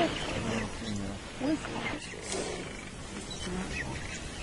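Short, low growls and grunts from lions and African buffalo in a fight, fading somewhat over the few seconds.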